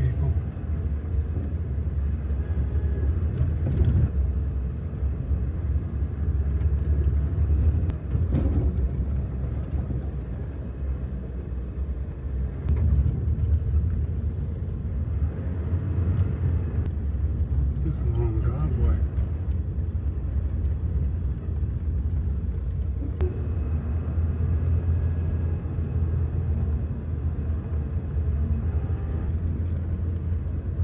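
Road noise heard inside a moving car's cabin: a steady low rumble from the tyres and engine as it drives slowly along a paved road.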